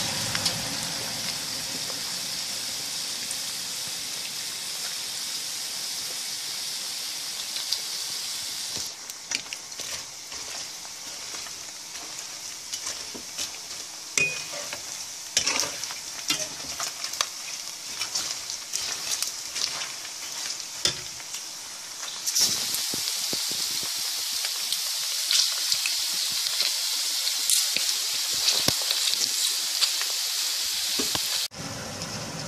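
Chicken skins deep-frying in hot oil, with a steady sizzle. From about nine seconds in, the sizzle is quieter and broken by clicks and knocks of a utensil stirring in the pan. The full sizzle comes back after about twenty-two seconds.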